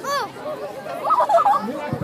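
Several people's voices talking and chattering, with no other distinct sound.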